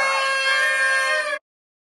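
Several paper party horns blown together in a steady, overlapping blare of held tones. It cuts off abruptly about a second and a half in, and silence follows.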